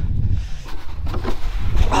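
Wind buffeting a handheld camera's microphone in a steady low rumble, with a few soft scuffs and rustles as the camera is moved about.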